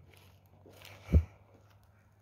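Faint outdoor background with a single short low thump about a second in.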